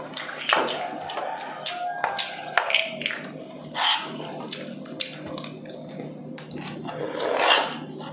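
Close-miked eating sounds: chewing and slurping, with scattered sharp clicks of a spoon and utensils against bowls and plates, and two longer slurps, about four seconds in and near the end.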